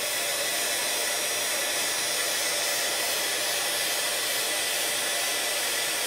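A small handheld craft heat tool runs steadily, its fan blowing hot air onto plastic heat-shrink tubing to shrink it.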